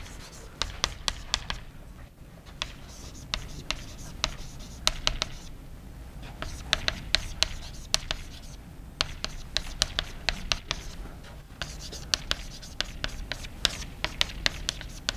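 Chalk writing on a blackboard: bursts of sharp taps and scratching strokes, with short pauses between the bursts.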